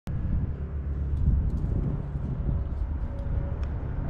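Outdoor ambience: a steady low rumble with a few faint ticks.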